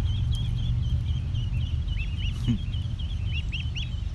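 A flock of ducklings peeping continuously: many short, high, rising-and-falling peeps overlapping one another, over a steady low rumble.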